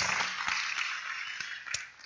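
Light applause from a seated audience, dying away over about two seconds.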